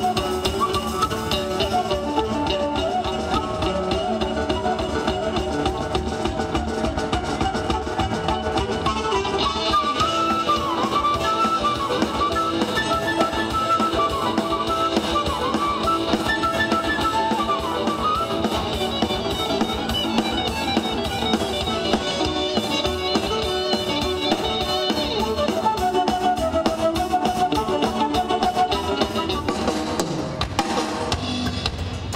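Live band music: a drum kit keeping a steady, fast beat under electric guitar, bass and keyboard.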